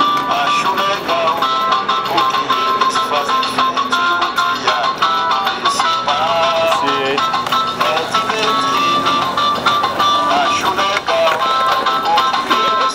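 Music: a pandeiro (Brazilian tambourine) struck in a quick, steady rhythm under an amplified melody.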